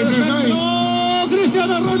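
Spanish football radio commentary heard through an Imperador multiband tabletop radio's speaker: a man's voice, with one long held note about half a second in, over a steady low hum.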